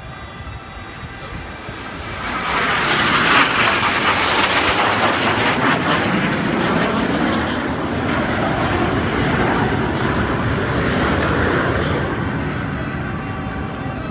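A jet aircraft trailing smoke flies low overhead. Its noise swells about two seconds in, stays loud, and drops in pitch as it passes, then eases slightly toward the end.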